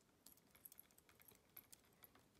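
A scattering of faint clicks from Lego plastic pieces being rotated and moved by hand on a brick-built robot figure.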